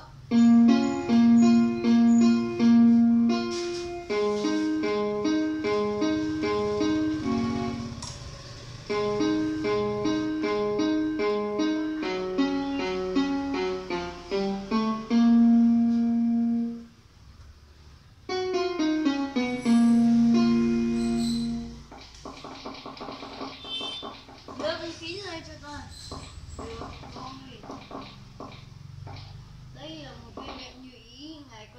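Portable electronic keyboard played with a piano-like voice: a melody of quick repeated notes over longer held low notes, pausing briefly about 17 seconds in and stopping about 22 seconds in, after which voices talk.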